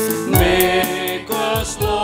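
Choir singing the offertory hymn of a Catholic Mass, with percussion strokes keeping a beat about every half second.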